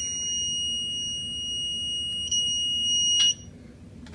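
Eastwood digital torque angle wrench's electronic buzzer sounding one steady high-pitched tone, the alert that the set angle of 30 degrees of twist has been reached. It gets louder about two and a half seconds in and cuts off with a click after a little over three seconds.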